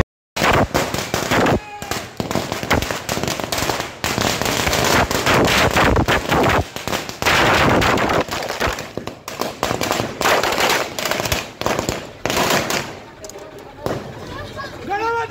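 A long string of firecrackers going off on a street, a rapid, continuous crackle of bangs that lasts about thirteen seconds and thins out near the end.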